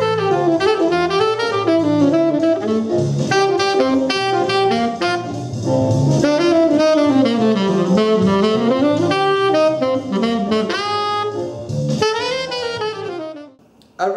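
Selmer Mark VI tenor saxophone playing a jazz blues line of quick phrases that run up and down, with a lower line of notes underneath; the playing dies away shortly before the end.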